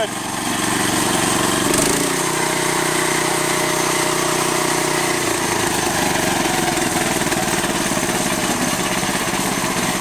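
Honda GX390 13 hp single-cylinder engine on a rock crusher running steadily after a carbon cleaning and carburetor clean-out and adjustment. Its note changes about two seconds in and again about five seconds in as the throttle lever by the carburetor is worked by hand.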